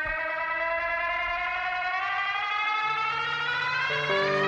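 A sustained, siren-like electronic tone with many overtones glides slowly upward in pitch over low held notes. The low notes change about three seconds in, as a musical transition from the live band's instruments.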